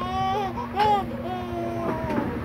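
A toddler whining in three drawn-out cries, the last held longest, over a steady low hum.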